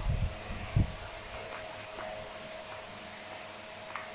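Steady background hum and hiss with one thin steady tone, like a fan running. A low thump comes just under a second in, as the cardboard pistol is handled, with a few faint ticks after it.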